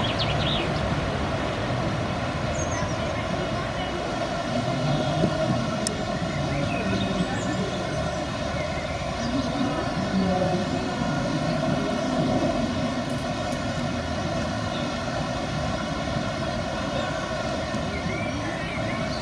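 Rushing whitewater on a canoe slalom course's rapids, with a steady droning hum running underneath.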